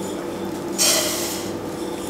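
Dry flattened rice flakes (aval) poured from a plastic measuring cup into a non-stick pan, a brief dry rustling hiss starting nearly a second in and lasting about half a second.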